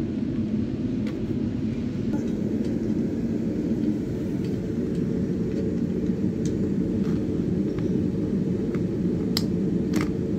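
A steady low rumble of background noise at an even level, with a few faint clicks and taps scattered through it.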